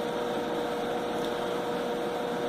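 Steady background hiss with a faint, steady hum tone running under it; nothing else happens.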